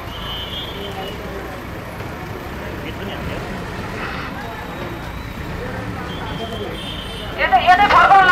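A steady low diesel engine rumble from a backhoe loader working at a demolition site, under faint scattered voices from onlookers. Near the end a man's loud voice suddenly starts up, close to the microphone.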